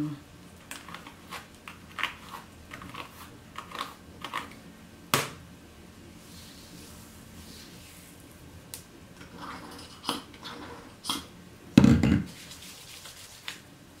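Handling noises as a Denman-style hairbrush and fingers work through wet curly hair: a run of short scratchy clicks in the first few seconds, a single sharp click about five seconds in, more clicks later, and a dull thump near the end.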